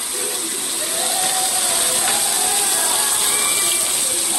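Steady sizzling hiss of food frying and cooking on the stove, with a cast-iron skillet of fish and a pot of food cooking down.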